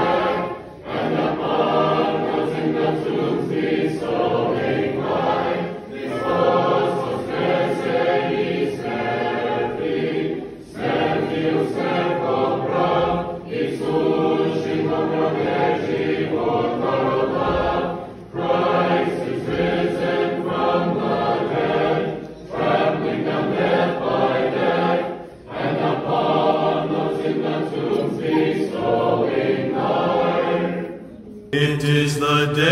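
Church choir singing an Orthodox chant without instruments, in phrases broken by brief pauses every few seconds.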